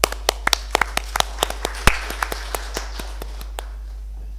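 Small audience applauding in distinct, scattered hand claps that start abruptly, thin out and die away after about three and a half seconds.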